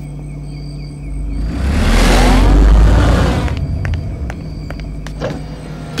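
A motor vehicle passes close by: its engine rumble and road noise swell to a peak and fade away over about two seconds, with a gliding pitch as it goes past. A steady low hum underlies it, and a few light clicks follow.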